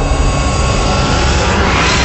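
A loud jet-like rushing whoosh, part of the music and sound-effect intro, swelling to a peak near the end.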